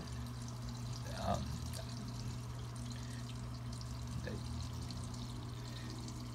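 Fluval FX5 canister filter running on an aquarium: a low, steady hum with water trickling and pouring.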